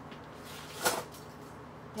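Quiet room tone broken by one short, sharp sound, a click or smack, a little before the middle.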